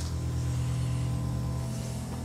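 Low, sustained music: a held bass chord with a few steady higher notes, moving to a new chord near the end.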